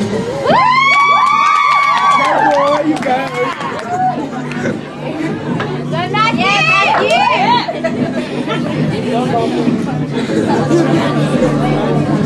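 Audience chatter and high-pitched whoops over background music: one long shrill whoop starting about half a second in and lasting about two seconds, then a second burst of shrieks around six to seven seconds in.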